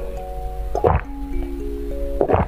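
One wet slurp of jelly drink sucked from a plastic syringe-shaped container, about a second in, over background music.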